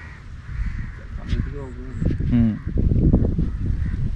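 Wind buffeting the microphone in a low rumble, with two short calls about a second and two seconds in.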